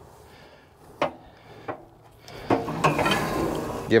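Steel cattle-handling alley knocking twice as a calf moves through it, then a longer metallic scraping rattle from about two and a half seconds in.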